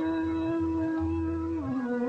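A male ghazal singer holds one long sung note. Near the end he glides down and begins to ornament the melody, over a low accompaniment.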